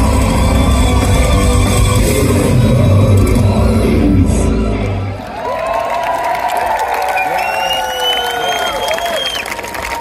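Heavy metal band playing live through a festival PA, loud with a heavy low end, until the song ends abruptly about halfway through. A crowd then cheers, with shouts and long high whistle-like tones.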